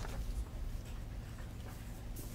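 Quiet classroom with faint pencil scratching and paper rustling as students write on worksheets, over a low steady hum.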